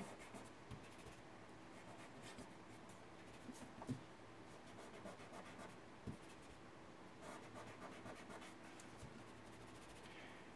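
Very faint rubbing of a fingertip on paper, picking up graphite from a patch of pencil shading, with a couple of soft taps.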